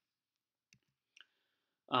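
Near silence broken by two faint short clicks about half a second apart, the second trailing into a brief soft hiss, then a man's voice starting just before the end.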